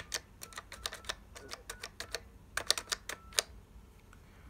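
Push-buttons of a Western Electric 2500DM Touch-Tone keypad being pressed one after another, giving a quick, irregular series of crisp plastic clicks, a few followed by a faint short tone. The loudest presses come near the end.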